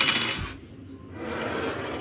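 Rubbing and scraping noises from dishes and a plastic container being handled on a kitchen counter: a louder rasping burst at the start, then a softer stretch of rubbing in the second half.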